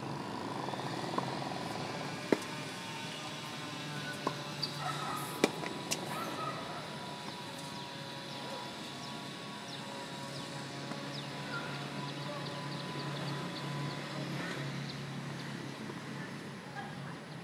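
Tennis balls knocking: a few sharp single hits on a hard court, one about two seconds in and a cluster between four and six seconds in, over a steady low hum.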